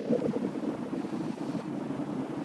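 A pause in speech, leaving only a steady, low background hiss of room noise with no clear voice.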